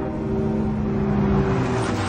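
Batmobile sound effect: engine running as the car approaches, swelling into a rushing pass that peaks about a second and a half in.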